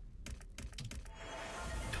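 Video slot game sound effects: a quick run of light clicks as the symbols tumble in, then a swell of noise with faint tones, rising over the last second as the spin lands on a win.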